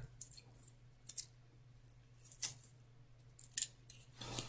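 Scissors snipping through the lace front of a synthetic wig: a few quiet, separate snips, roughly a second apart.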